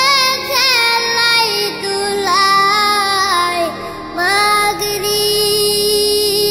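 A high voice singing a Bengali Islamic devotional song (gojol) about the daily prayers, in long held, ornamented notes with short breaks between phrases.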